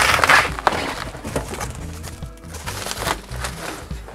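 Cardboard rustling and scraping in several bursts as the box flaps drag against a heavy sheet-metal CRT monitor being slid out of its box. Quiet background music plays underneath.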